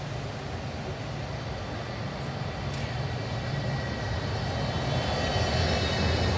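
Electric street tram approaching and passing close: a low running hum with a steady high electric whine that comes in about halfway and grows louder as it nears.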